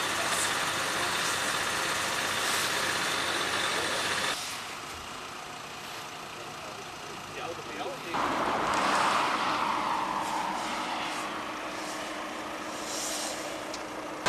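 Motorway traffic going past: steady tyre and engine noise from passing vehicles, cut off abruptly about four seconds in. It returns louder about eight seconds in, with one vehicle's sound falling in pitch as it goes by.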